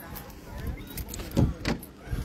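A few soft thumps and knocks as someone moves at the open door of a car, with light rustling between them.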